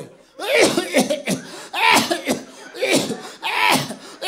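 A man giving a series of about four loud, exaggerated fake coughs into a handheld microphone, each with a falling pitch, staged as a coded cough signal for multiple-choice exam answers.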